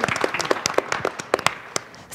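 Applause from a small group of hands clapping, scattered claps that thin out and die away about one and a half seconds in.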